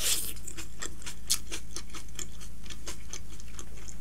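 Close-miked chewing: irregular wet mouth clicks and smacks, several a second, with a brief smack of a finger being licked at the start, over a steady low electrical hum.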